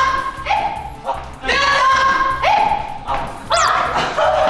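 High-pitched excited yelps and shouts, in several short bursts, some rising in pitch, over background music with a steady beat.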